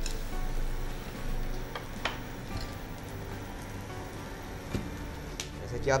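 Faint background music over a low hum, with a few light clicks of a steel spatula in a pan where a slice of bread is frying.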